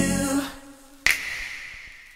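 The end of a pop song: the music stops about half a second in, then a single sharp snap about a second in, with a short ringing tail that dies away.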